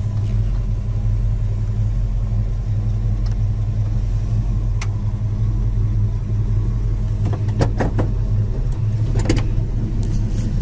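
1972 Plymouth Duster's 318 V8 running steadily at low speed, heard from inside the cabin, with a few short clicks in the second half.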